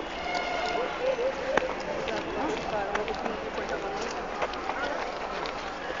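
Street ambience of several indistinct voices talking at once, with scattered short sharp clicks and knocks.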